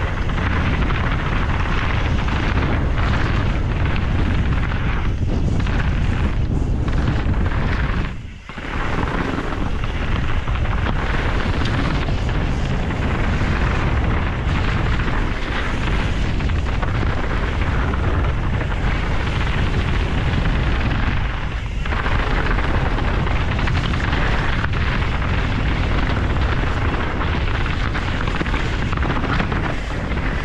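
Wind rushing over an action camera's microphone as a Canyon Strive enduro mountain bike descends a rocky dirt trail at speed, with the tyres rolling and the bike rattling over the ground. The noise dips briefly about eight seconds in.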